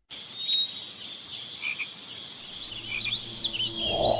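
Night chorus of frogs and insects, starting abruptly: steady rapid high trills with scattered chirping calls over them. A low drone comes in near the end.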